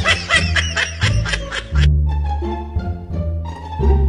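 Background music with a low bass line. For the first two seconds it is overlaid by high-pitched giggling laughter that cuts off suddenly, and lighter string notes carry on after it.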